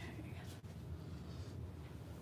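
Quiet room tone: a steady low hum with a few faint ticks and handling sounds.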